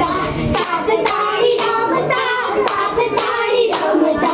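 A group of girls singing a children's folk song in unison, with sharp hand claps keeping time about twice a second.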